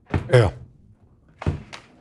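Brief spoken interjections in a studio, with a short thump about a second and a half in.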